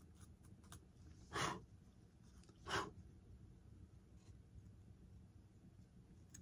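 Two short puffs of breath, about a second and a half apart, over faint small clicks of handling.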